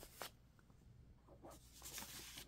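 Faint rustle of printed paper photos being handled and slid across a blanket: a brief swish just after the start, and a few more near the end.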